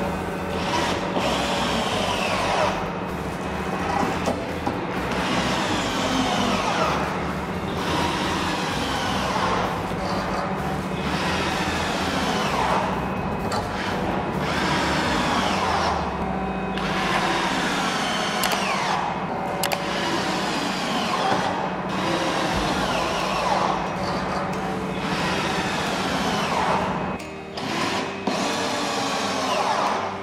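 Cordless drill driving screws one after another through a steel frame into the wooden tabletop. On each screw the motor's pitch falls as the screw draws tight, with short pauses between screws. Background music runs underneath.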